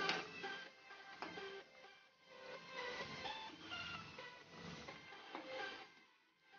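Soft instrumental background music: a melody of short notes at changing pitches.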